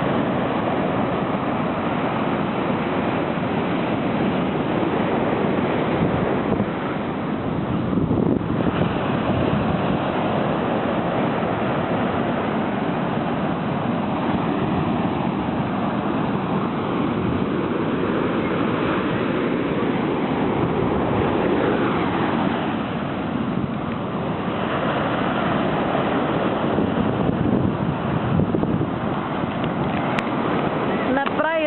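Ocean surf breaking and washing up the sand in a steady rush, with wind buffeting the microphone.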